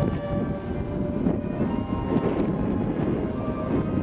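High school marching band playing a full-ensemble passage: brass and percussion together, a thick, loud sustained sound with held chords.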